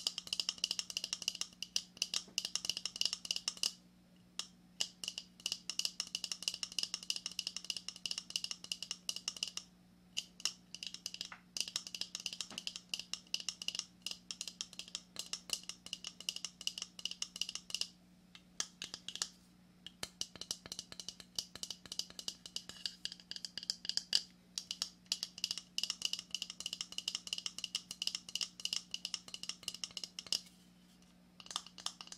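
Fingernails tapping and scratching quickly on a hard shell object held in the hands: dense crisp clicks and scrapes, broken by short pauses a few times.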